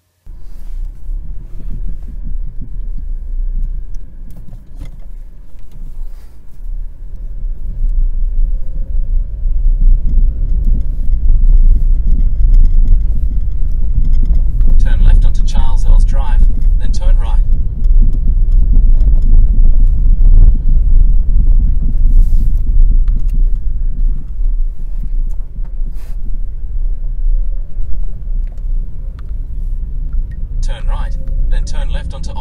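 Low rumble of road and engine noise inside a 2013 Kia Soul's cabin while driving; it starts abruptly and grows louder over the first ten seconds or so.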